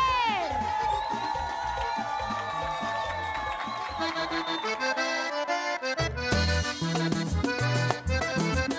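Diatonic button accordion playing Panamanian música típica over bass and percussion. A voice's long falling cry fades out at the very start. Around four and a half seconds in, the bass and drums drop away and leave the accordion alone; they come back in at about six seconds.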